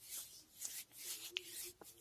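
Faint rustling and rubbing of a hand moving over a face and hair, with soft brushes of fabric close to the microphone. A faint steady hum joins about halfway through.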